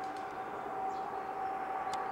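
Steady background hum with one held, unchanging tone over a faint hiss, and a small click near the end.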